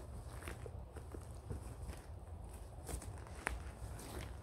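A backpack being opened and rummaged through by someone kneeling on dry leaf litter: fabric rustling, with scattered small knocks and clicks of straps, buckles and contents. The sharpest click comes about three and a half seconds in, over a steady low rumble.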